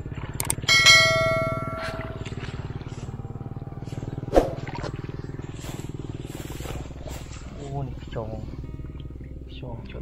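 A steady low motor drone, with a click and then a ringing bell-like chime about a second in, and one sharp thump a little after four seconds; brief snatches of voice near the end.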